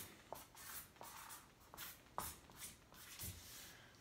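Dry-erase marker writing on a whiteboard: a string of faint, short squeaks and scratches as each stroke of the figures and the fraction line is drawn.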